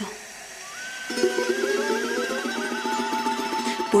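Instrumental break in an Andean song: a charango strummed in a fast tremolo, entering about a second in, under a high held melody line that trills rapidly.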